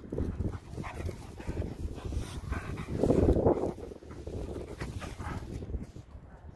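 Springer spaniel making a run of short vocal sounds, the loudest about three seconds in.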